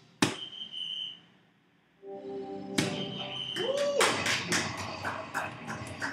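A soft-tip dart hits a DARTSLIVE electronic dartboard with a sharp click, followed by the machine's short high electronic tone. After a brief lull of about a second, the machine plays its electronic sound effects and music, with a quick run of sharp hits, as its on-screen animation runs.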